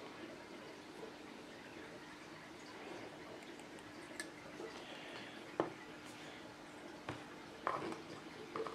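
Plastic food tubs and lids handled on a wooden table: a few light knocks and taps in the second half, over a faint steady room hum.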